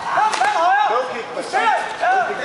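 Loud shouting of high, wavering voices cheering on a full-contact karate fight, with one sharp slap of a strike landing about a third of a second in.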